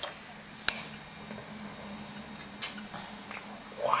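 A small metal fork clinking against a child's bowl: two sharp clinks about two seconds apart, the first near the start and the second a little past the middle, then a fainter tap.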